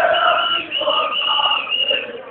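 A crowd of student demonstrators chanting and shouting together, loud, with a shrill high tone running over the voices.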